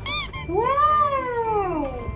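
A toddler's vocalising: a short, very high squeal, then one long drawn-out wordless call that rises and then falls in pitch.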